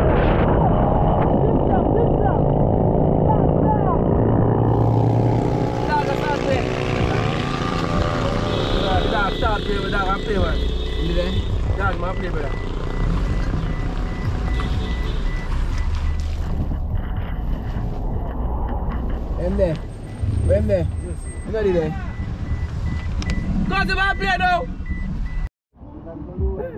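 Voices of several people talking over one another, above a steady low rumble.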